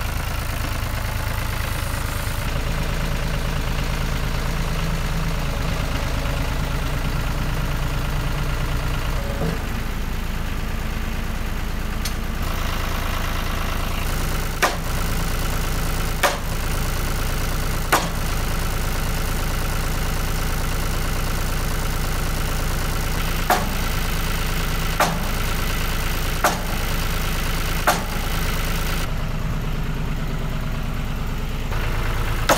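John Deere tractor engine idling steadily, with seven sharp sledgehammer blows on the wooden ridge-board framing in the second half, in two runs of strikes about a second and a half apart, knocking the ridge board up higher.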